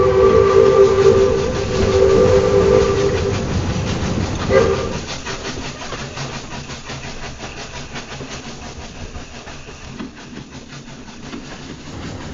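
Steam locomotive whistle blowing a long multi-note blast for about three seconds, then a short second blast, over the train's steady chuffing and wheel clatter, which fades as the train passes.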